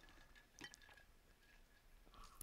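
Near silence: room tone, with one faint tick about half a second in.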